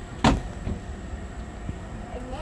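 A single loud, short thump about a quarter of a second in, followed by a couple of much fainter knocks.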